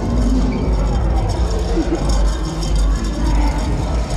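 Music and the indistinct talk of people around, over a steady deep low rumble.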